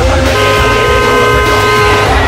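A car horn held in one long steady blast, starting about a third of a second in, over a low rumble of engines and background music.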